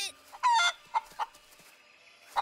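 A cartoon piñata chicken clucking: one short cluck about half a second in, then two quicker clucks.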